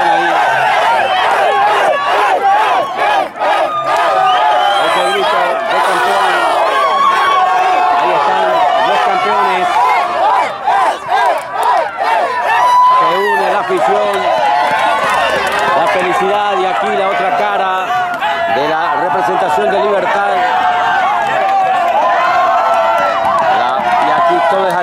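A crowd of players and supporters shouting and cheering together in a celebration of a championship win, many voices overlapping.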